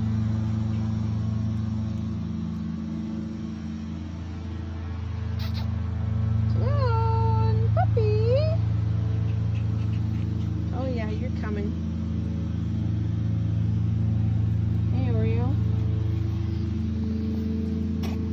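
Lawn mower engine running steadily in the background, growing louder about six seconds in. Over it a puppy gives short high-pitched whines several times.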